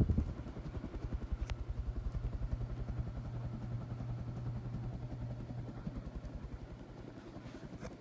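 1988 Codep Hugger ceiling fan running, its motor giving a steady hum with a fast, low, even pulsing under it; the uploader calls it a noisy motor. A brief low rumble right at the start, and a single click about a second and a half in.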